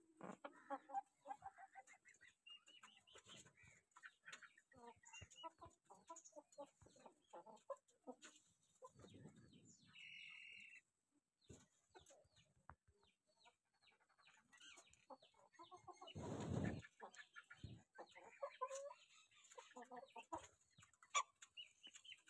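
Aseel chickens clucking, with many short low calls from the flock. About ten seconds in there is a brief steady high whistle-like tone, and a louder rustling burst comes later.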